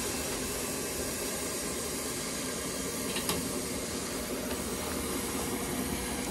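Steady hiss of steam driving a small home-built Tesla turbine as it spins on its first start-up, with a couple of faint clicks about three seconds in.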